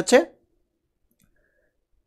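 A man's voice finishing a word just after the start, then near silence.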